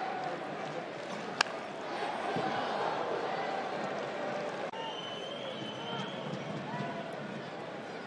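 Ballpark crowd murmuring, with one sharp crack of a bat meeting a slider about a second and a half in: the ball is hit hard into the ground and goes foul.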